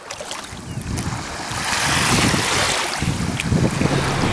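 Small waves washing over sand and around a floating oil containment boom, with wind rumbling on the microphone. It fades up over the first two seconds.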